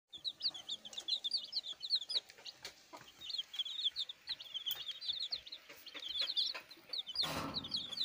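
A brooder full of native chicken chicks peeping continuously, many short high cheeps overlapping several times a second. A short burst of rustling noise comes near the end.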